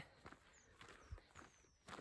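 Near silence: faint outdoor background with a few faint, short, falling high chirps.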